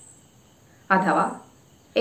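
A woman's voice speaking one short word about a second in, with a faint steady high-pitched whine audible in the pauses either side.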